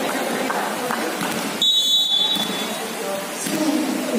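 A referee's whistle blown once, a short high steady tone about a second and a half in, over the chatter of spectators and players.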